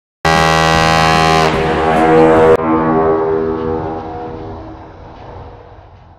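Ship's horn sound effect: a loud horn blast that sets in abruptly, shifts in pitch about a second and a half in, cuts off sharply about two and a half seconds in, then rings away slowly.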